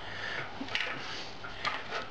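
Small clicks and rubbing of objects being picked up and handled on a wooden table, with soft breath noise between them.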